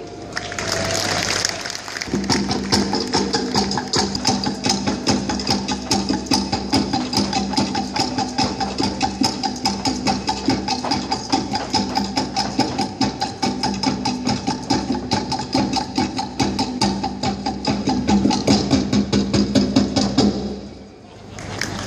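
Fast, driving Polynesian dance percussion: rapid, even wooden drum beats, with a sustained low note joining about two seconds in.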